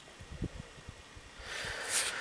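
A few faint low thumps, then a person's breath rising in a short hiss near the end.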